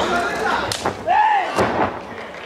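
A wrestler slammed down onto the ring mat, with two sharp thuds about a second apart and a rising-and-falling yell between them over crowd voices.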